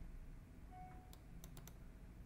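Faint clicking of a computer mouse, a few quick clicks just past a second in, over near-silent room tone.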